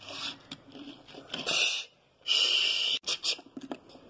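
Breathy hissing mouth noises: a few short puffs, then two longer hisses about a second and a half and two and a half seconds in, with a few light knocks from toys being handled.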